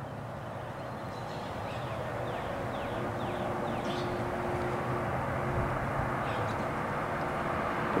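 Pickup truck approaching along a paved road, its engine and tyre noise growing gradually louder, with a steady low hum.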